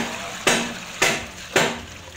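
Woven bamboo basket being shaken in a basin of water to rinse its contents: four sloshing splashes about half a second apart.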